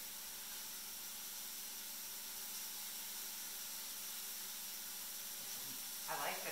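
Steady hiss of mushrooms sautéing in garlic-flavoured oil in a skillet.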